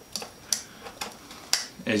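Four light, sharp clicks about half a second apart from a stainless steel nesting cook set and cup being handled.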